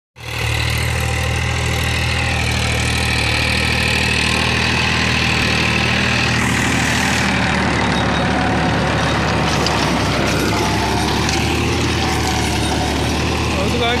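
Tractor diesel engine of a Powertrac ALT 4000 running steadily under load while it drives a rotavator through the soil, with a higher whine above the engine note that wavers in pitch.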